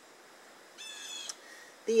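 A bird calls once, a short high-pitched call lasting about half a second, a little under a second in, with a fainter trace just after it.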